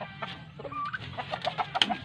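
Chickens clucking in a run of short calls, with one sharper, higher call near the end.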